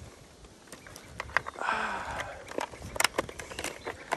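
Scattered clicks, knocks and rustling from a chainsaw being handled and lifted with its engine off, with a brief burst of rustle near the middle.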